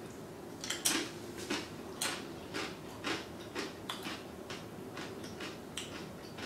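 A person chewing a crunchy bite of guacamole, with sharp crunches about twice a second, the loudest just under a second in and fading toward the end.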